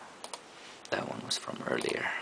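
Computer mouse and keyboard in use: a quick pair of sharp clicks, then about a second of rapid, irregular clicking and tapping.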